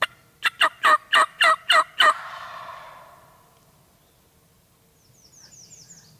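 Wild turkey gobbler gobbling once at close range: a loud, rapid rattling run of about seven notes lasting under two seconds, then echoing through the woods as it fades.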